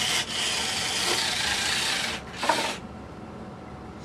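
Wristblade mechanism's small electric motor driving brass gears along a recast CD-ROM drive track, retracting the blades with a rasping whir for about two seconds, then a brief second burst.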